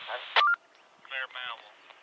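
Railroad two-way radio traffic heard through a scanner. A transmission ends with a sharp click and a brief two-note beep, the squelch closes, and then there is a short snatch of tinny radio voice.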